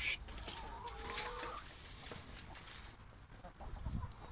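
Chickens clucking, with one bird giving a single held call lasting about a second near the start, amid scattered short clicks and rustles.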